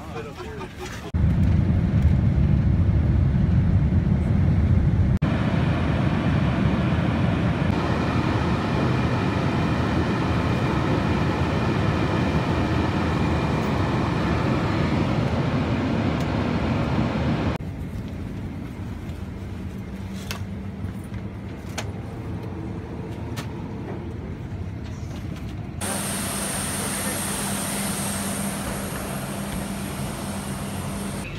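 Jet airliner cabin noise: a loud, steady rush of engine and airflow from about a second in until about two-thirds through. Then it cuts to a quieter steady hum, and in the last few seconds an idling coach adds a steady high whine.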